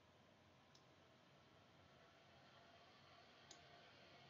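Near silence: faint room tone with two faint clicks, one just under a second in and one near the end.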